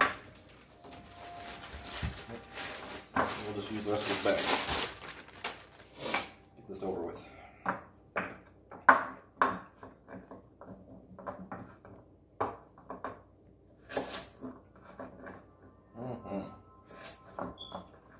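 A plastic produce bag crinkling as carrots are taken out, then a kitchen knife cutting carrots on a wooden cutting board: short, irregular chops, some louder than others.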